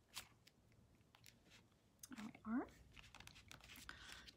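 Faint handling of cardstock and paper pieces: a short crisp rustle just after the start, a few light ticks, and soft paper rustling in the last second or so. About halfway through a brief hummed voice sound rises in pitch.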